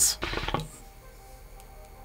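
Faint background music with a few steady held tones, under otherwise quiet room sound.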